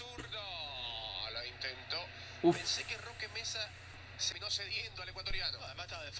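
Faint commentary voice from the football highlight video playing in the background, with a man's short, louder 'uf' about two and a half seconds in.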